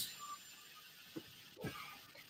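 A pause between speakers on a video call: faint room tone, with two brief faint sounds, one about a second in and one shortly before the end.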